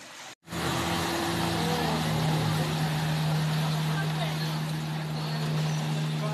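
A boat's engine runs at a steady, unchanging pitch over a rush of water and wind noise. It starts abruptly less than a second in, after a brief trickle of fountain water.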